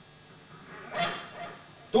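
A short, loud wordless cry from a performer's voice about a second in, followed by a smaller one.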